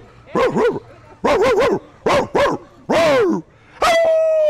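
A man imitating a dog barking, 'roof roof', in short runs of two or three barks, with laughter near the end.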